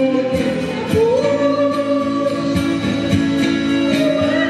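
A woman singing a Brazilian roots (música raiz) song live through a PA, backed by acoustic guitars, accordion and a drum keeping a steady beat; from about a second in she holds one long note.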